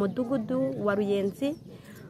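A woman wailing in distress: her voice is drawn out in long, nearly level sung-like tones in two or three phrases, and breaks off about one and a half seconds in.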